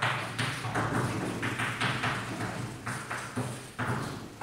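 Chalk on a blackboard as a line of handwriting goes up: a quick run of short tapping, scraping strokes, about two or three a second.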